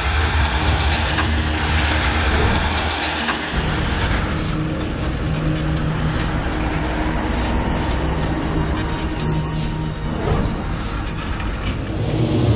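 Heavy military trucks driving, their engines running steadily, with the rumble changing character about three and a half seconds in.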